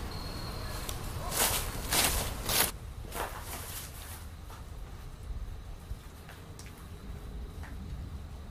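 Three footsteps, each a short noisy scuff about half a second apart, beginning about a second and a half in, followed by a few faint clicks and scuffs over a low steady rumble.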